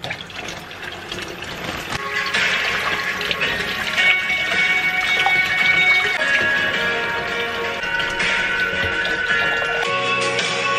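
Kitchen faucet turned on right at the start, water running from the tap into a stainless steel sink and splashing over tomatoes rinsed under the stream. Background music plays over it.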